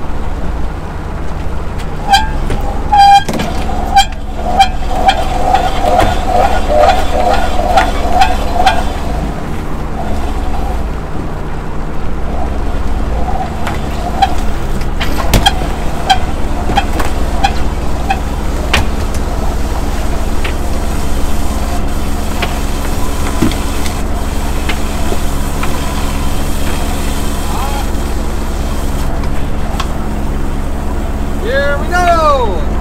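Fishing boat's engine running with a steady low hum. A wavering, slightly whining tone rises over it for several seconds early on and returns faintly later, with scattered clanks of deck gear.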